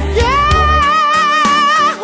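A gospel song: a singer holds one long, slightly wavering note over bass and backing band, and a new sung phrase begins right at the end.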